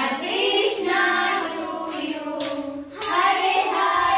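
A group of women and children singing together, with hand claps.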